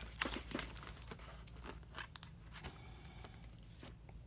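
Plastic trading-card sleeves and wrappers crinkling, with a run of short clicks as cards are handled and set down. The sounds thin out after about three seconds.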